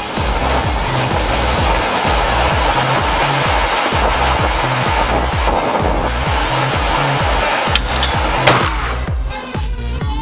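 Ground fountain firework spraying sparks with a steady loud hiss, over electronic dance music with a steady beat. A sharp crack comes near the end, and the hiss then cuts off.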